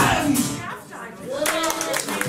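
A band's final note rings out and fades. About a second and a half in the audience starts clapping, with a voice calling out over it.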